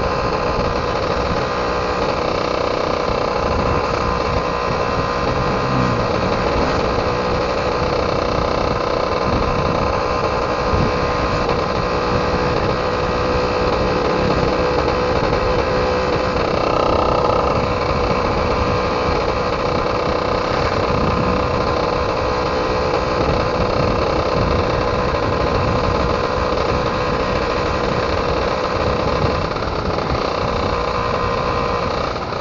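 Yamaha F1ZR's 110 cc single-cylinder two-stroke engine running at a steady pitch while riding at cruising speed, heard from the bike with wind rumbling on the microphone.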